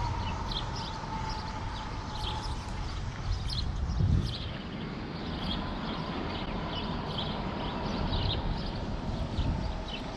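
Wind buffeting an outdoor microphone, an uneven low rumble that swells briefly about four seconds in, with faint short high chirps or ticks about every half second.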